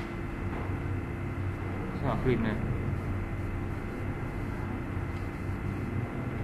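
A steady low hum runs throughout. About two seconds in there is a short sound of a voice that falls in pitch.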